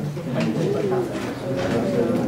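Indistinct murmur of many students talking among themselves in a large room, overlapping low voices with no clear words.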